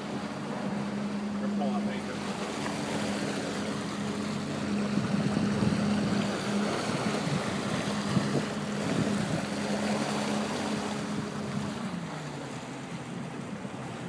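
Motorboat engine running steadily under way, with water rushing past the hull and wind buffeting the microphone. Near the end the engine note drops as the boat slows.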